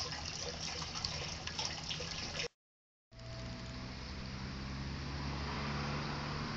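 Small garden water fountain trickling and splashing steadily, cut by about half a second of dead silence some two and a half seconds in; after the gap the water goes on with a low steady hum beneath it.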